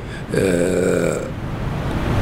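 A man's drawn-out hesitation sound, a single held "eeh" of about a second at a steady, slightly falling pitch, voiced while he searches for his next words.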